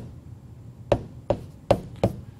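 Stylus tapping on a touchscreen while handwriting: four sharp clicks in the second half, about 0.4 s apart, as pen strokes are written.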